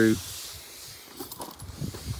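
A soft hiss that fades over about a second, followed by a few faint ticks.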